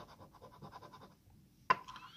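A metal coin scratching the coating off a lottery scratch-off ticket in quick, even strokes, about ten a second, stopping about a second in. A single sharp click follows near the end.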